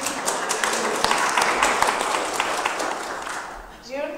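A congregation applauding, a thick patter of many hands clapping that dies away near the end.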